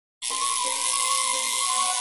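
Handheld Tesla coil running on a cathode ray tube: a steady, hissing electrical buzz that starts abruptly.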